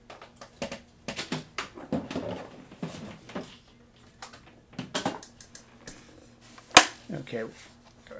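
Knocks, clunks and rattles of a yellow portable battery unit being picked up and handled, with one sharp knock about three-quarters of the way through. A man's low vocal sounds come in between.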